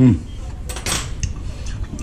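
A short scrape of metal cutlery against a dish, about a second in, after a brief 'hm'.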